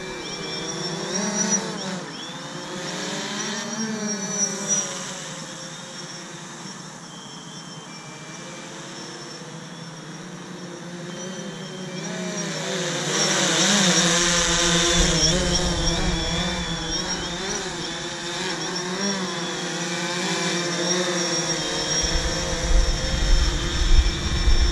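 DJI Phantom 3 Standard quadcopter's four propellers and motors whining in flight, the pitch wavering up and down as it manoeuvres. It grows louder about halfway through and again near the end as it comes lower and closer.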